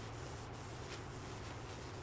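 A cloth wiping over an oil-finished walnut and epoxy slab: a faint, even rubbing over a low steady hum. This is the excess Rubio Monocoat oil finish being wiped off after sitting for a few minutes.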